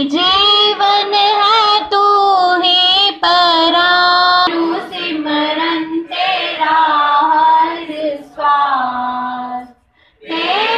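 Schoolgirls singing a Hindi devotional prayer song, led by one girl singing into a microphone, in long held notes with short breaks between phrases.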